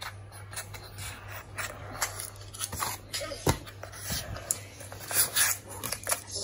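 Paper cutouts being slid and tapped over a laptop keyboard: an irregular run of scrapes and light clicks, over a steady low hum.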